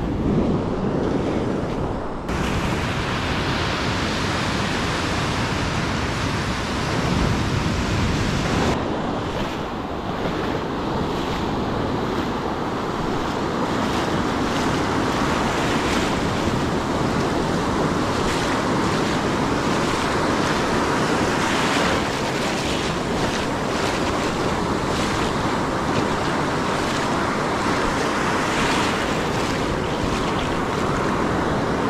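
Ocean surf breaking and washing through the shallows around the wader, with wind rumbling on the microphone.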